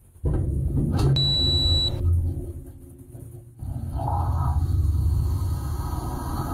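Dishwasher pump running with a low rumble, heard from inside the tub. A single high electronic beep sounds about a second in and lasts under a second.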